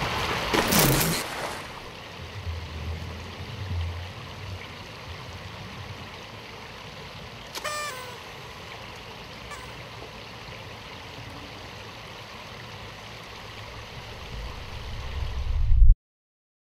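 Steady outdoor hiss, like running water, after a short loud burst at the start. A brief high chirp comes about halfway, and a low rumble swells near the end before the sound cuts off suddenly.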